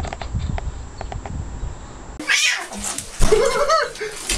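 A cat meowing twice: a short call a little after halfway, then a longer call that rises and falls near the end. Before them, a low rumble with a few faint clicks.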